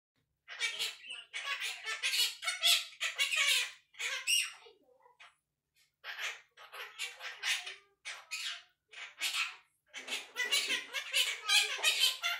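Quaker parrot (monk parakeet) grumbling and chattering in a quick run of short, speech-like calls, with a brief pause near the middle.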